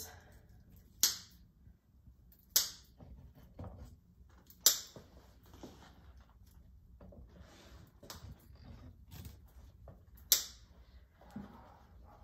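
Cutters snipping off plastic zip-tie tails: four sharp snips at uneven intervals, the last after a long pause, with faint rustling of the mesh in between.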